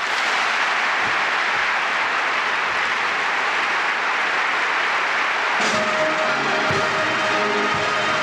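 Audience applauding loudly right after a speech ends. About six seconds in, a military band starts playing under the applause.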